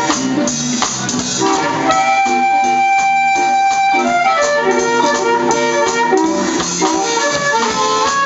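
Blues harmonica played cupped against a hand-held microphone with a live band of drums, bass and keyboard; it holds one long note from about two to four seconds in, then plays a run of shorter notes.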